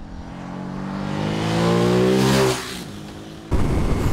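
Ducati Monster SP's 937 cc Testastretta desmo V-twin with Termignoni exhaust, accelerating out of a corner past the camera. Its note rises in pitch and grows louder for about two and a half seconds, then fades quickly as the bike goes by. A steady low wind rumble takes over near the end.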